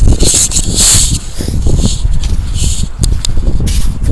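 Wind rumbling on a handheld camera's microphone, with bursts of rustling and scraping handling noise and a few light knocks as the camera is swung around.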